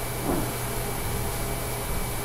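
Room tone of a lecture recording during a pause: steady hiss with a low hum, and a faint brief sound about a third of a second in.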